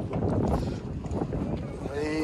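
Wind buffeting an outdoor microphone, an uneven low rumble.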